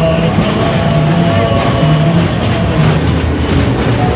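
Kiddie train ride rolling past on its track, its wheels clicking on the rails, with fairground music playing over it.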